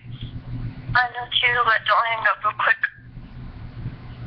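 A girl's voice speaking for about two seconds through a mobile phone's speaker, words unclear, over a steady low hum.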